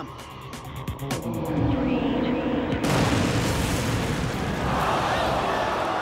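Dramatic fight sound design over music: a few sharp clicks in the first second, then a sudden deep boom about three seconds in, a punch-impact effect whose rumble carries on for a few seconds.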